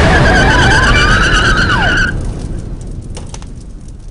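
Car tyres screeching over a revving engine. The squeal holds steady and cuts off about two seconds in, leaving a fading rumble with a few crackles.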